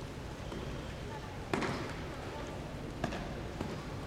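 Three sharp slaps of hand on skin, a sumo wrestler slapping his own body during the pre-bout ritual. The loudest comes about a second and a half in with a short echo, and two weaker ones follow near the end, over the steady murmur of the arena.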